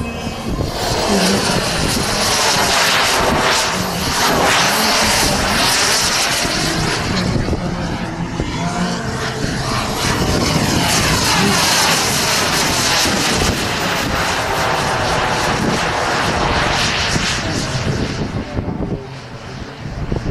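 Turbine engine of a radio-controlled F-16 scale model jet running in flight. Its sound swells and fades twice with a sweeping, phasing whoosh as the jet passes.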